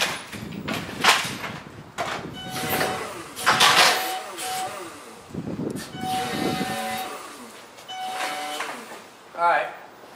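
Forklift driving with a load, rattling and clanking, with sharp knocks about a second in and again around three and a half seconds. A steady whine comes and goes through the rest.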